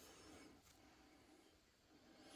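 Near silence, with a faint soft rustle of a paper tissue rubbing over a small brass coin.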